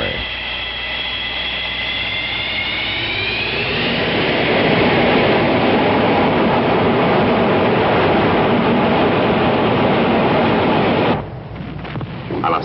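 A jet engine's whine rising in pitch under a swelling roar, which settles into a loud steady roar and cuts off suddenly about eleven seconds in.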